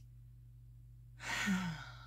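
A woman sighs once, an exasperated, breathy exhale a little past halfway through, with a short voiced end that drops in pitch.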